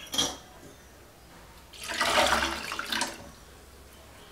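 A hand squeezing and swishing ingredients in watery liquid in a stainless steel pot: a brief splash at the start, then a longer slosh of water from about two seconds in to about three seconds in.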